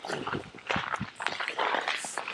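Footsteps in shallow snow and ice, a few uneven noisy steps.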